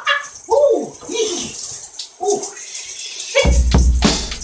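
Shower water running with a hiss, over a few wordless vocal sounds that slide down in pitch; a drum-backed music track starts suddenly near the end.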